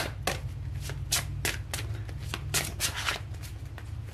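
A deck of tarot cards shuffled by hand, the cards snapping and slapping together every few tenths of a second, the sharpest snap at the very start.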